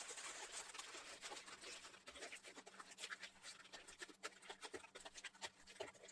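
Aluminium foil being crumpled and squeezed by hand into a tight ball: faint, irregular crinkling and crackling, quieter and sparser toward the end.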